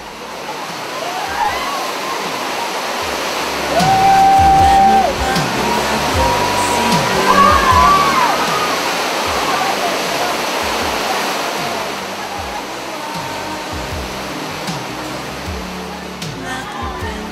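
Loud, steady roar of a grade-five whitewater rapid on the Nile, the water crashing and rushing. A long, held pitched note rises above it about four seconds in, and a wavering one near eight seconds.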